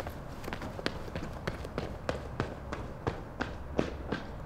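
Footsteps on a paved path, quick regular steps at about three a second.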